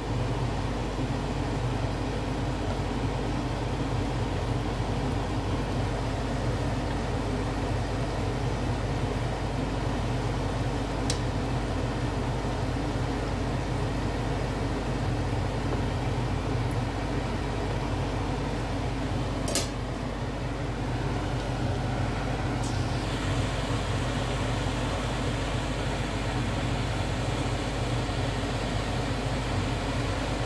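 Egg rolls shallow-frying in oil in a nonstick pan: a steady sizzle over a low, even hum, with a few faint sharp clicks about a third of the way in and again past the middle.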